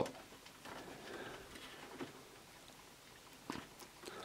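Faint scratching and fumbling of fingers on the small plastic hood latch and body of an RC scale truck, with a small click about two seconds in and another near the end.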